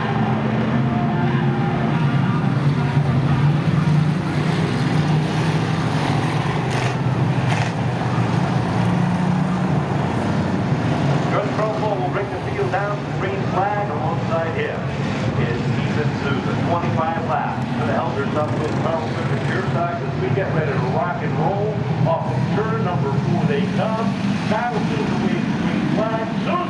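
A field of pure stock race cars circling the short track at pace speed, their engines making a steady low drone. People's voices are mixed in, plainer from about halfway on.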